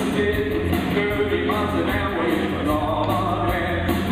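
Rock band playing live: electric guitar, bass guitar and drum kit, with a male singer at the microphone and the cymbals keeping a steady, even beat.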